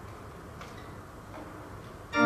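Quiet church room tone with two faint clicks, about half a second and about a second and a third in.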